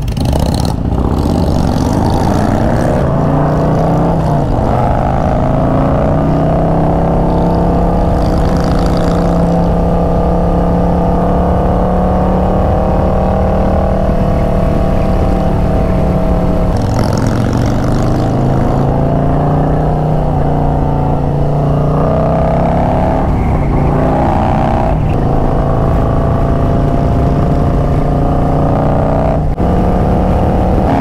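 Harley-Davidson touring motorcycle's V-twin engine pulling away and accelerating through the gears. Its note climbs in pitch, holds steady, then breaks and climbs again at gear changes about halfway through and again later.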